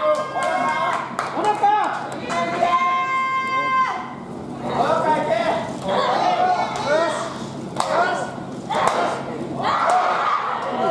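Shouts and calls from the wrestlers and the crowd in an arena, including one long held shout, with sharp smacks of forearm strikes landing in the second half.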